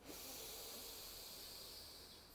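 A woman's long, deep inhalation through the nose, a steady airy hiss that eases off near the end.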